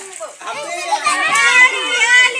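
Several women and children talking and calling out at once, their voices overlapping loudly.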